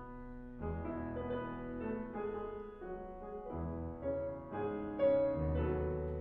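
Grand piano played solo, a classical passage of chords over low bass notes. A new chord sounds every half second to a second, each left to ring.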